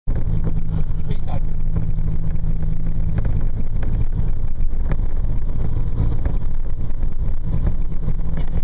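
Steady engine and road noise of a moving vehicle, heard from inside the cabin, with a constant low hum and irregular small rattles and knocks.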